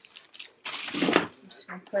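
Plastic packaging rustling and being handled as a bagged baby toy is set into a cardboard box, in one loud burst lasting about half a second, a little over half a second in. A woman starts speaking near the end.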